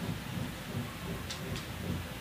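A low, uneven rumble, with two faint brief rustles about a second and a half in.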